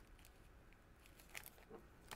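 Near silence: room tone, with a few faint ticks about one and a half seconds in as small bolts are handled in a plastic parts bag.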